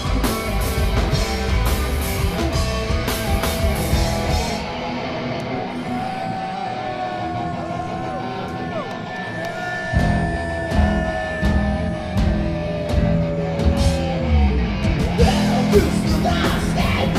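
Thrash metal band playing live, distorted electric guitars, bass and drums. About four seconds in the drums and bass drop away and a lead guitar holds long, bent notes. The full band comes back in around ten seconds, with the lead line running on over it.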